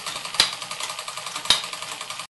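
Fleischmann 1213 overtype model steam engine running its belt-driven toy workshop accessories: a fast, light, even clatter with two sharper clicks about a second apart. The burner is almost out of fuel and the engine is slowing.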